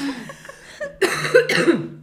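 A person's voice trailing off after laughter, then a short burst of breathy, cough-like vocal pulses about a second in.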